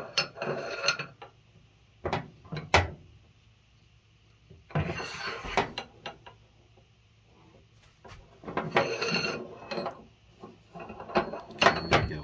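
Rocker arms being fitted by hand onto a Mopar 360 rocker shaft: bursts of metal clicking and clinking, with longer scraping rattles about five seconds in and again around nine seconds.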